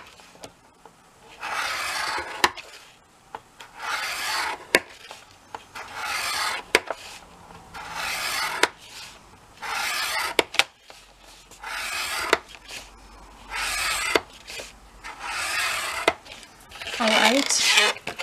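A scoring stylus drawn again and again through cardstock along the grooves of a scoring board: eight or so dry scraping strokes, about one every one and a half seconds, with small sharp clicks between them.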